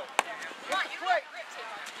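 People's voices calling out, with one sharp knock about a fifth of a second in.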